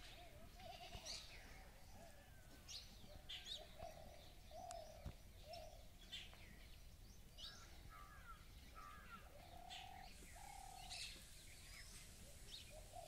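Faint birds chirping: scattered short, high chirps, with a few brief, steady lower calls from an animal, two of them close together near the end.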